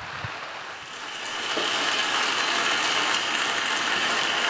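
Audience applauding, the clapping swelling about a second in and then holding steady.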